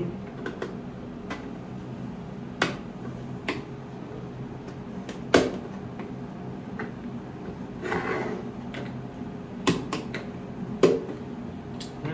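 3D-printed plastic parts being handled and pressed into a plastic birdhouse body: a handful of sharp clicks and knocks, loudest about five seconds in and again near the end, as pieces snap into place.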